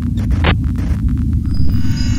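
Glitch-transition sound design: a deep throbbing bass drone, with three short bursts of static in the first second and a buzzing electronic tone near the end.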